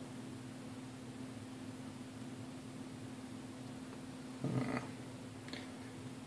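A steady low hum with faint background hiss. About four and a half seconds in there is a short voice-like sound, such as a hum or murmur.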